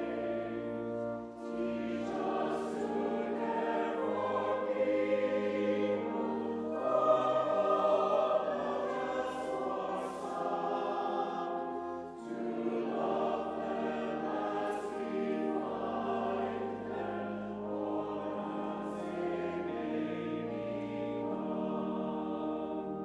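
Church congregation singing a hymn together, accompanied by an organ with a steady bass line. The singing breaks briefly between lines about a second in and again about twelve seconds in.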